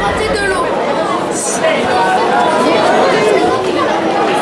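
Spectators chattering at the ground, many overlapping voices at once. A steady low music bed stops about half a second in.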